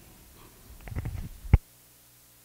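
Handling noise from a handheld microphone being lowered: low rumbles and a few faint ticks, then a sharp click about one and a half seconds in, where the sound cuts off abruptly as the microphone is switched off.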